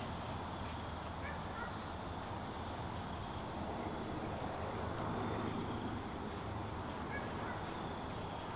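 Quiet outdoor woodland ambience: a steady low hiss and rumble, with a few faint short chirps about a second in and again near the end.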